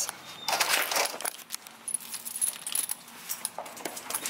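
A dog's metal chain collar and leash clinking and jingling as the dog moves, with a rustling burst about half a second in.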